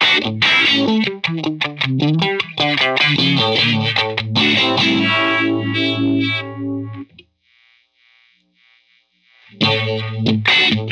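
Electric guitar played through a Farm Pedals Fly Agaric vibe-voiced four-stage phaser: picked notes and chords, ending on a held chord that stops about seven seconds in. After a couple of seconds of near silence, playing starts again just before the end.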